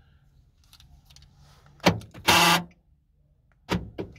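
Handling noises inside a small car cabin: a sharp click about halfway through, a brief squeaky creak right after it, and a knock near the end.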